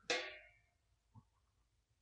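Stainless-steel lid of an ultrasonic cleaner being lifted off its tank: a brief metallic ring that fades within half a second, then a faint click about a second in. The cleaner itself is switched off.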